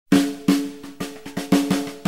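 Unaccompanied snare drum opening a Korean pop song: about eight strokes in an uneven, fill-like rhythm, each ringing briefly and fading.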